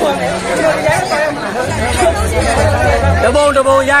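Several people talking at once in a close crowd, their voices overlapping.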